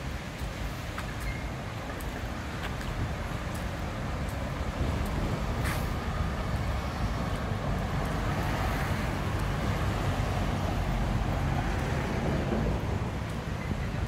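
Road traffic: vehicles passing along a street, growing louder about a third of the way in and staying up until near the end.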